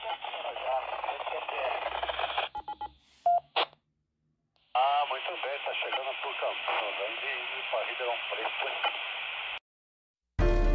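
A voice heard through a Baofeng UV-9R Plus handheld UHF FM transceiver's speaker, thin and cut off above the middle of the voice range. It breaks off in a few short beeps at the end of a transmission, then after a second of silence a second transmission starts and stops abruptly near the end.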